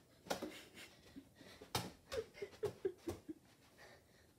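A few sharp thumps of a boy moving about and handling a football on a carpeted floor, with a quick run of short laughing voice sounds in the middle.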